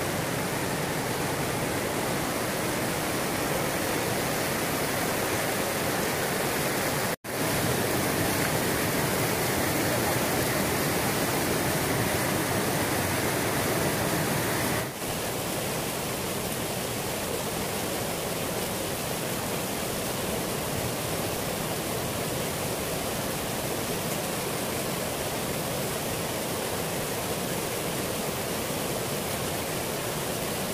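Steady rush of a rocky river's rapids and small falls, an even roar of water, with a momentary dropout about seven seconds in.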